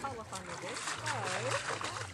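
People's voices talking, untranscribed, over a steady splashing of water.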